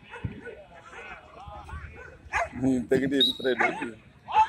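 Dogs barking, with a run of louder short barks in the second half.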